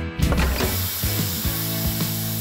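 A steady sizzling hiss from an overcooked, blackened roast chicken on a hot baking tray, starting just after the start, over background music with a steady beat.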